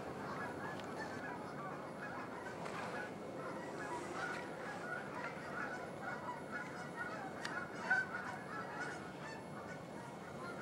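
A large flock of geese honking, a continuous chorus of many overlapping calls, with one louder call near the end.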